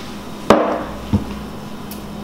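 A metal cocktail shaker being knocked open after shaking: one sharp rap with a short ring about half a second in, then a second, duller knock a little after a second in.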